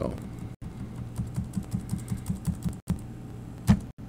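Computer keyboard keys clicking: a quick, even run of about a dozen keystrokes in the middle, then one louder click near the end, over a low steady hum.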